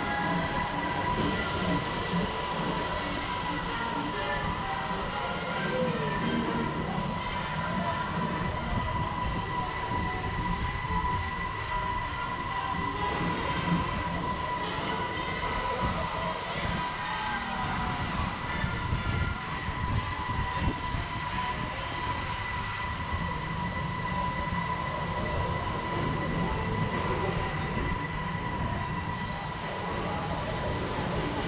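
Amusement-park spinner ride running, heard from a rider's seat: a steady mechanical rumble with a constant high whine throughout.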